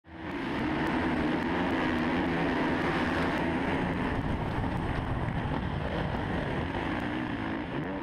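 Onboard sound of a Suzuki RM-Z450 single-cylinder four-stroke supercross bike running hard off the start, with the other bikes of the pack close around it; a loud, steady engine drone.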